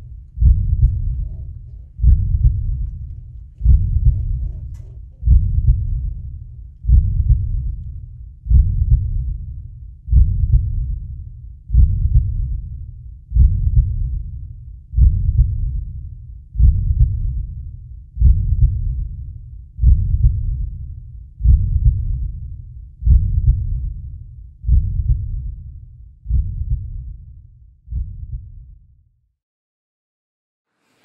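A slow, deep beat: one low strike about every one and a half seconds, each dying away before the next. The beats weaken near the end and stop.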